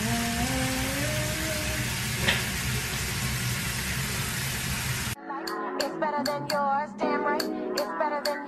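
A steady hiss with a low hum, and a woman humming for the first two seconds; about five seconds in it cuts off abruptly to background music with short plucked notes in a steady rhythm.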